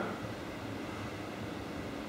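Steady room tone of a large hall: a low hum with faint hiss and no distinct event.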